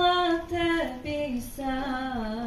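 A girl's voice singing solo into a microphone, unaccompanied, in slow, long-held notes that step downward in pitch.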